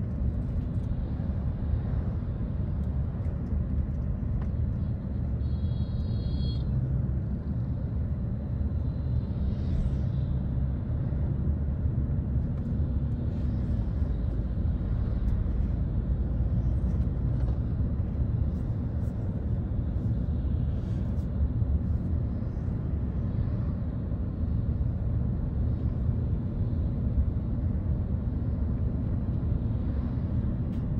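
Steady low road and engine rumble of a moving vehicle, heard from inside as it drives, with a brief high tone about six seconds in.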